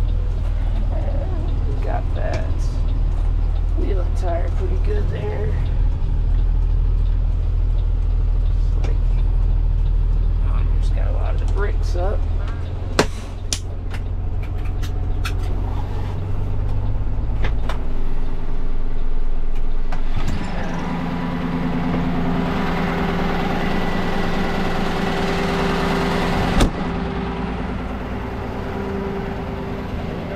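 Kenworth rollback tow truck's diesel engine running as the truck pulls up and stops, with a few sharp clicks about halfway. From about 20 seconds in, a steadier, higher hum with a hiss takes over as the hydraulic bed is tilted down to the road.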